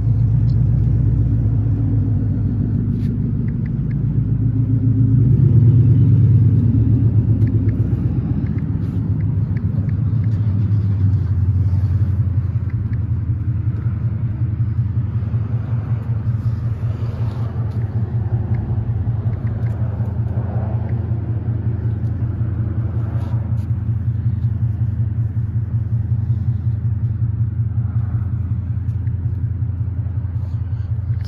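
An engine idling with a steady low rumble that swells slightly a few seconds in.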